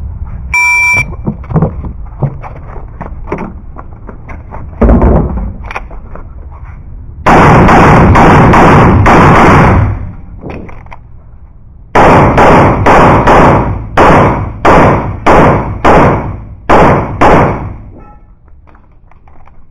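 An electronic shot-timer beep about a second in, then pistol fire from a CZ 75 Shadow: a single shot near five seconds, a rapid string of shots running together for about two and a half seconds, then about a dozen separate shots at a little over two a second.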